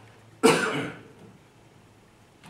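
A person's single loud cough about half a second in, dying away within about half a second.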